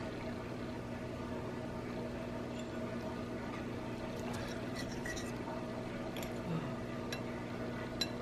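A fork cutting into a fried egg on a plate, with a few faint clinks against the plate, over a steady low hum.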